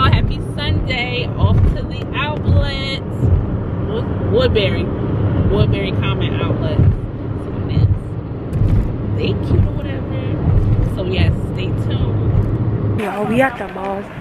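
A woman talking inside a moving car, over the steady low rumble of road and engine noise in the cabin. The rumble drops away near the end.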